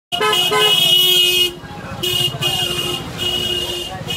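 Vehicle horns honking in street traffic: one long blast of about a second and a half, then three shorter blasts, over a low rumble of traffic.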